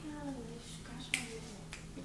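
Faint voices in the background, with one sharp click a little over a second in and a softer one near the end.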